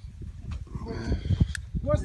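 Men's voices talking indistinctly, clearer near the end, over a steady low rumble.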